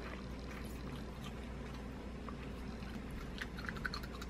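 Faint, soft chewing of a sugar-coated rainbow gummy belt, with a few small wet mouth clicks near the end, over a steady low hum.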